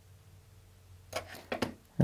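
Quiet room tone, then near the end a brief vocal sound followed by two quick computer mouse clicks.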